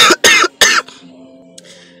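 A woman coughing into her fist: three loud coughs in quick succession within the first second.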